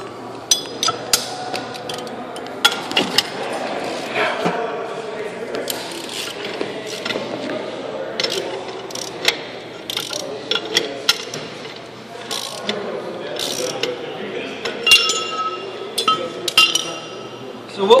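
Hand ratchet clicking in irregular runs as a wheel-bearing adjusting nut is run down onto a truck axle spindle, with sharp metal clinks of socket and nut.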